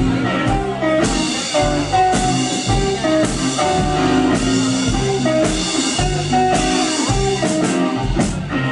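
Live rock band playing an instrumental passage: electric guitar notes over a drum kit, with cymbal strikes about once a second.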